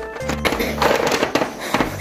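Wooden chess pieces clattering together on a board in a quick run of clicks starting about half a second in, over background music.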